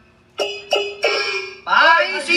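Glove-puppet theatre music: after a brief gap, three plucked string notes about a third of a second apart, each ringing briefly. Near the end a man's voice breaks in with a theatrical, pitch-swooping call.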